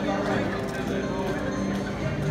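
Crowd of square dancers talking over the start of a country square-dance song's instrumental intro, a few steady held notes sounding beneath the voices.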